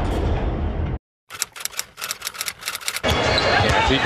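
An intro sound effect with music cuts off about a second in. After a brief silence comes a quick, irregular run of sharp clicks, and from about three seconds in the crowd noise of a basketball arena broadcast.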